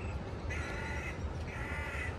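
A crow cawing twice, two drawn-out calls about a second apart, over a low rumble of wind on the microphone.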